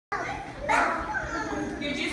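Indistinct chatter of several voices in a room, with one voice briefly louder just under a second in.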